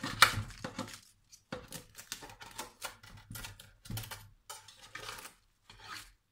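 Crisp baked filo pastry of a banitsa being cut into pieces in a metal baking tin: a run of irregular crackles and scrapes, the loudest right at the start.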